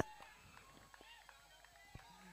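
Near silence: a faint background with one faint tap near the end.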